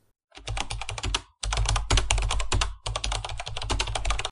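Fast computer keyboard typing, rapid keystrokes in three runs with short breaks between.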